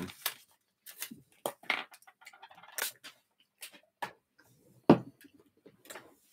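Scattered small clicks and mouth noises of chewing chocolate, with light handling of a hardback art journal on a desk, and one sharp knock about five seconds in.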